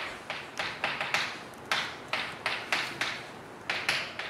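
Chalk tapping and scratching on a blackboard as words are written: about a dozen short, sharp strokes at an irregular pace.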